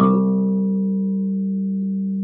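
Electric bass guitar: one finger-plucked note struck at the start and left to ring, its brighter overtones fading within about a second and a half while the low body of the note holds steady.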